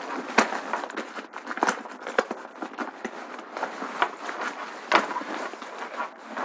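Nylon rain cover of a backpack tackle bag rustling as it is pulled over the bag and wrapped around it, with scattered sharp clicks and taps throughout.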